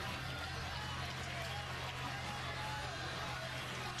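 Ballpark crowd murmur with faint distant voices, over a steady low hum.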